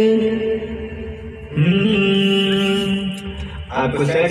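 A man's voice singing long, held notes, each new note sliding up into pitch: one held note, a brief break about a second and a half in, then another held note, and a third starting near the end.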